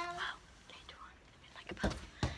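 A girl whispering close to the phone's microphone, with a short low thump near the end.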